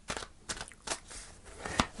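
A deck of tarot cards being shuffled by hand: a soft rustle of cards sliding together, broken by a few short, crisp clicks of card edges.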